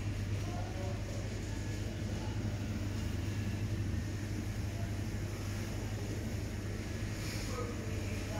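Supermarket background noise: a steady low mechanical hum with no breaks, with faint distant voices.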